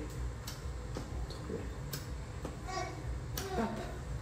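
Small electric anti-cellulite suction massager held against the thigh, running with a low steady hum, with a few sharp clicks about a second and a half apart.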